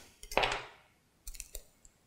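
A few light clicks of an egg being handled and tapped against a small ceramic bowl, just before it is cracked. A short rush of noise sounds about half a second in.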